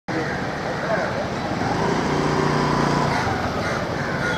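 Street sound: road traffic running, with people talking in the background.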